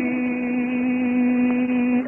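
Male Quran reciter's voice holding one long, steady note at a level pitch, a drawn-out vowel in melodic mujawwad recitation.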